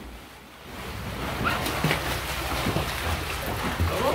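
Children splashing and kicking hard as they swim in a swimming pool: a steady churning splash of water that builds up about a second in.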